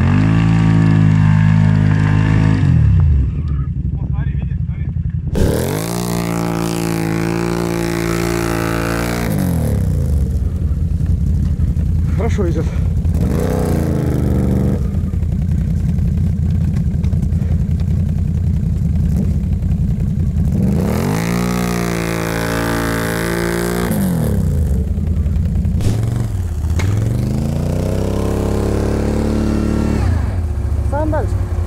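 ATV engines revving in about five bursts of a few seconds each, the pitch climbing and falling back, with steady idling between: quads bogged in deep snow being driven out under throttle.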